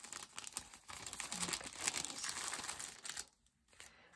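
Clear plastic bag crinkling as a stack of cards is slid out of it; the crackling stops about three seconds in.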